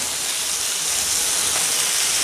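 Potato strips and green beans sizzling steadily in a little oil in a frying pan over a high flame.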